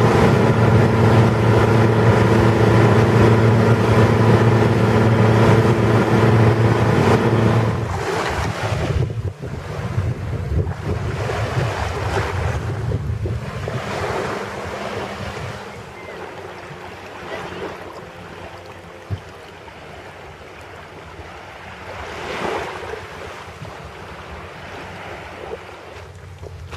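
A boat engine runs at a steady pitch for about the first eight seconds, heard from on board. It then gives way to waves washing in slow swells, with wind on the microphone.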